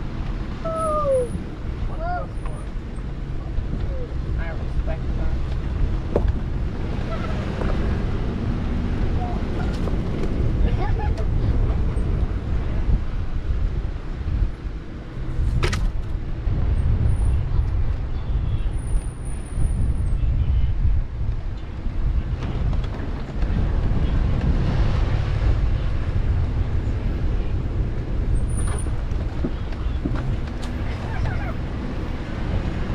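Off-road SUV driving slowly on a dirt trail: a steady low rumble of engine and tyres on dirt, with a few short squeaks near the start and one sharp knock about halfway through.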